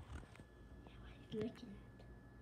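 Soft, whispered speech, one short phrase about one and a half seconds in, over a faint steady high tone.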